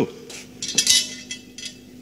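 Sword blade scraping and clinking against its scabbard as it is handled: a short metallic scrape with brief ringing, about a second in.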